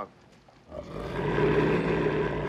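A wolf growling: a low, rough growl that starts just under a second in and keeps going.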